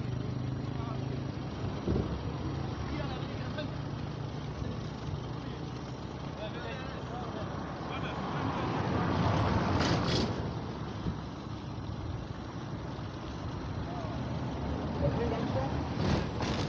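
Indistinct voices of people talking over a low, steady rumble that swells about nine to ten seconds in.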